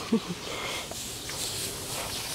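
Low, even outdoor background noise in an open field, with a brief faint voice near the start.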